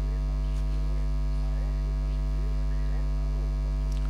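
Steady electrical mains hum: a constant low buzz with many evenly spaced overtones that holds level throughout.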